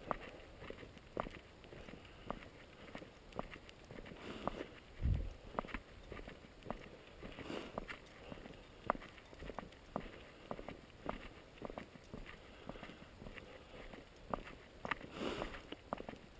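Footsteps of a person walking at a steady pace on a dirt-and-gravel road, a short crunch with each step, roughly two steps a second. A single low thump about five seconds in.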